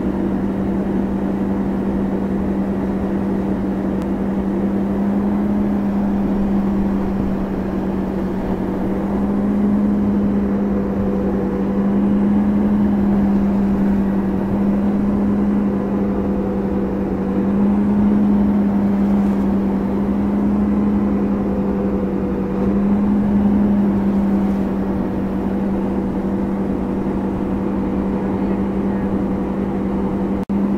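Tow boat's engine holding a steady 34 mph, a constant drone over the rush of wake and wind, its level swelling a little now and then.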